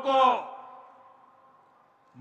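A man's speech through microphones and loudspeakers: one drawn-out word that fades away with a long echo.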